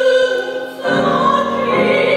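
A woman singing opera in a full classical voice with grand piano accompaniment. She holds one note, then moves to a new sustained note with a fresh piano chord about a second in.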